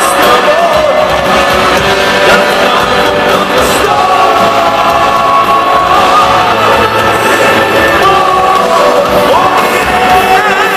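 Heavy metal band playing live: distorted electric guitars, bass guitar and drum kit, loud and continuous, with a singing or lead line that wavers in pitch above the band.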